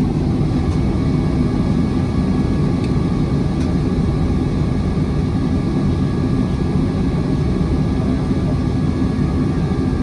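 Jet airliner's engines running at low power, heard inside the passenger cabin as a steady rumble with a faint high whine, while the plane taxis slowly.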